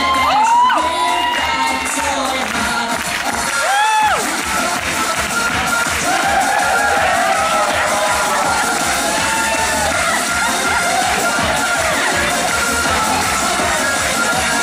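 Upbeat pop dance music playing over a hall, with an audience cheering and shouting throughout. Loud whoops rise above the crowd just after the start and again about four seconds in.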